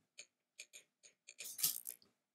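Computer keyboard and mouse clicks: a string of short, sharp clicks, sparse at first and coming in a quicker cluster near the end.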